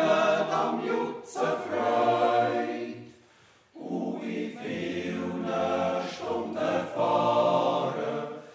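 Men's yodel choir singing a Swiss yodel song (Jodellied) a cappella in close harmony, in long held phrases with a brief pause about three seconds in.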